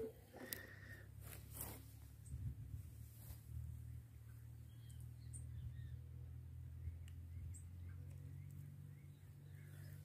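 Faint outdoor ambience: a steady low rumble, a few small clicks in the first few seconds, and faint bird chirps around the middle.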